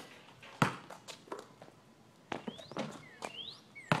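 A basketball thumping against hard surfaces several times, the loudest hit about half a second in. Birds chirp briefly in the background.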